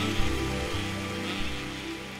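Live orchestra holding the final chords of a slow ballad, fading away, with audience applause starting under them.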